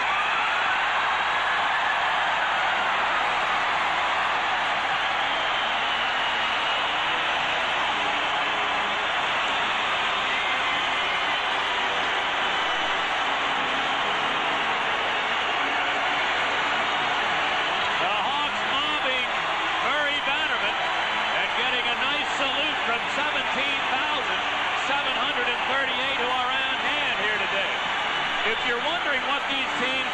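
Hockey arena crowd cheering and applauding, a dense steady roar of many voices, with individual shouts standing out more in the second half.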